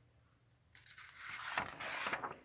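A page of a paperback picture book being turned by hand: paper rustling and sliding, starting just under a second in and growing louder, with a few quick crisp flicks near the end as the page flips over.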